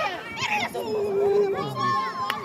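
Children's voices shouting and calling during a football game, with one long drawn-out call about halfway through.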